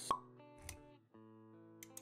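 Intro jingle music with a short pop sound effect just after the start, followed by steady held notes.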